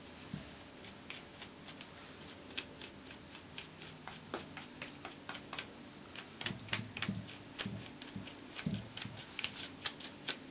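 Flat paintbrush with a little dry gold metallic paint rubbed lightly in short strokes over a polyester frame, dry-brush antiquing: a quick, uneven series of faint scratchy brush strokes, a few each second. A few soft knocks in the second half as the frame is handled.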